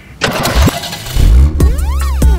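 A motor vehicle's engine starting: a rushing crank sound, then about a second in it catches into a heavy, low rumble. Music with sliding tones comes in near the end.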